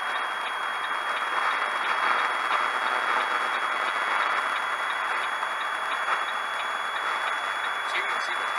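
Steady road and engine noise inside a moving truck's cab, picked up by a dashcam microphone, with a faint steady high whine.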